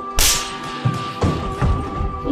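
A belt lashing with a sharp whip crack about a quarter second in, followed by three low thumps, over a steady held tone.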